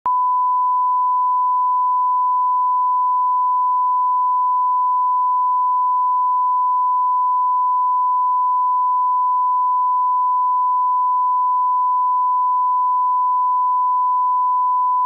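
Broadcast line-up test tone: a 1 kHz reference sine tone played with colour bars, one steady beep held unchanged at constant level.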